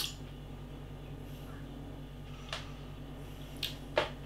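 Steady low hum of a quiet room, broken by a few short clicks: lip smacks and mouth sounds as a stout is tasted.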